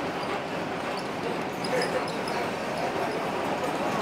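Steady running noise of an old streetcar in motion, heard from on board, with voices under it.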